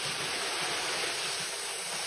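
Waterfall plunging into a rock pool: a steady, even rush of falling water.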